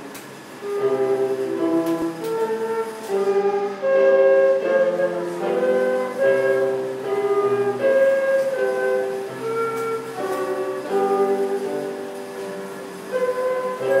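Transverse flute playing a melody of held notes, entering about a second in.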